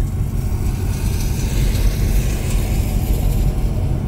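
Supercharged LSA 6.2-litre V8 of a Chevy SS running steadily at low speed, about 28 mph, heard from inside the cabin as an even low rumble with road and wind noise.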